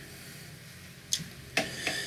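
A man who is out of breath pauses to catch his breath: quiet for about a second, then a short breath about a second in and a couple more brief breath sounds near the end.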